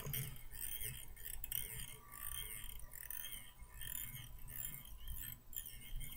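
Fly-tying thread being wound forward along a hook shank held in a vise: faint, high rasping sounds repeating about every half second as the bobbin goes round.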